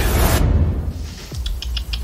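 Trailer soundtrack: a loud hit dies away into a low rumble, then a quick run of about five light clicks just before the music comes back.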